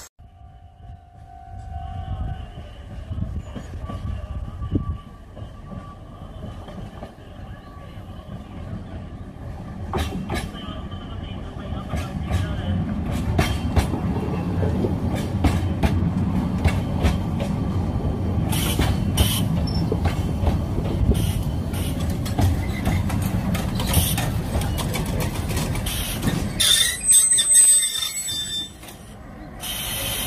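Oigawa Railway Ikawa Line passenger train running past a station platform. Its low rumble builds over several seconds and holds, with sharp clicks from the wheels and track. A brief high wheel squeal near the end is the loudest moment, and then the sound falls away.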